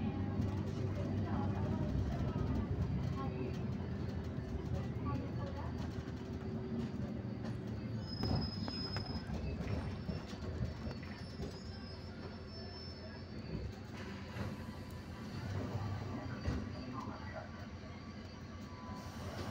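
Road vehicle driving slowly, heard from inside: a steady low rumble of engine and tyres on asphalt that dies down in the second half as the vehicle slows.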